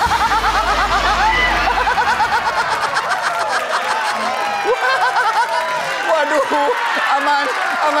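People laughing and calling out loudly, with a fast, high-pitched run of laughter in the first two seconds.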